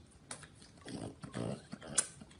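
French bulldog licking a pink ice pop: wet licking and smacking clicks, with two short low grunting sounds about a second in. A sharp click at the very end is the loudest moment.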